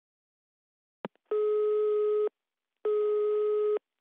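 Telephone line tone heard over the call: a click, then two steady beeps of about a second each with half a second between them, before the call is answered.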